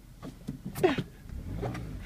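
Car engine idling as a low rumble heard inside the cabin, rising a little in the second half, with a few faint clicks and a brief faint voice sound about a second in.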